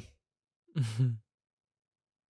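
A man's short chuckle, two quick breaths of laughter about a second in.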